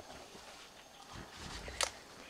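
Footsteps and rustling through dense, wet undergrowth on a jungle trail, with a low thump a little after a second in and a single sharp crack near the end, the loudest sound.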